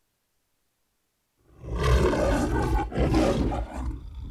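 The MGM logo's lion roar: a lion roaring twice, starting about one and a half seconds in, with a short break between the two roars and the second trailing off at the end.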